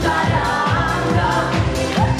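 Live pop song: a man and a woman singing into microphones over amplified accompaniment with a steady beat.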